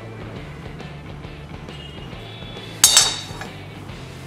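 One sharp metallic clink with a brief ring, about three seconds in: a steel spoon striking the metal kadhai. Quiet background music runs underneath.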